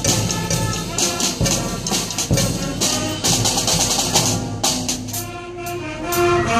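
Band music with a steady drum-kit beat and brass lines; near the end the drums thin out and held notes carry on.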